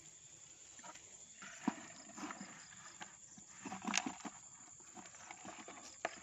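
Scattered soft knocks and rustles from a mesh net bag being handled over a plastic bucket, irregular and loudest about four seconds in, with a faint insect chirring in the background.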